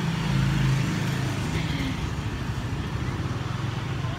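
Motor scooter engine humming steadily while riding, with wind noise on the microphone.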